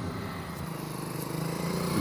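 A small engine running steadily with a fast, even pulse, getting gradually louder.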